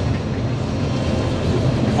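Combine harvester running under load while cutting oats, heard from inside the cab: a steady mechanical drone of engine and threshing gear.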